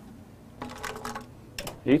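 A whiteboard eraser rubbing across the board in short strokes, then a sharp click about a second and a half in. A man's sudden exclamation "Eita!" comes at the very end.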